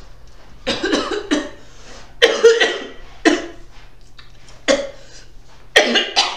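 A man coughing in a sudden fit: a string of harsh coughs in short clusters, roughly one burst a second.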